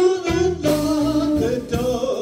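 Live blues band playing a slow blues: a lead line of long held, wavering notes over electric bass and drums.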